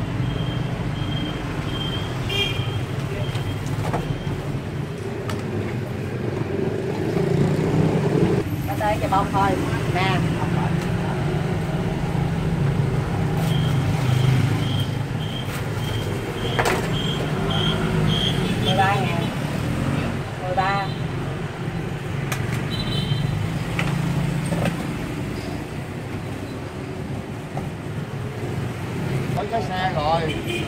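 Busy city street traffic, with engines running steadily throughout. A high repeated beeping comes in twice, and snatches of voices pass by.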